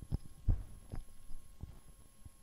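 Irregular soft low thumps and knocks over a faint steady hum, the strongest thump about half a second in.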